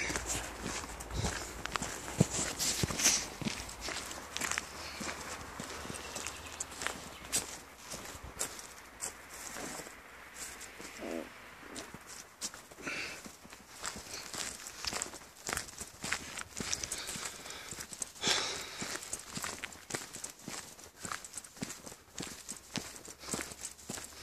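Footsteps of a person walking along a dirt forest path: a long run of soft steps.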